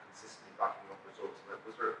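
Faint speech picked up off-microphone: the end of a reporter's question from across the room, a few short phrases.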